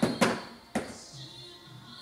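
A small box dropping onto a hard floor: two knocks about half a second apart, with faint background music.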